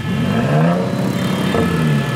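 Bentley Bentayga First Edition's twin-turbo 6.0-litre W12 revved at a standstill, heard right at the twin tailpipes: the engine note rises, eases, then rises again. The exhaust sound is very powerful.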